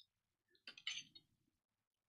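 Near silence, broken about two-thirds of a second in by a short cluster of faint, light clinks lasting about half a second: small hard objects knocking together on a painting table.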